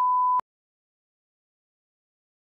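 A loud, steady electronic bleep tone at one pitch that cuts off abruptly less than half a second in, followed by dead silence.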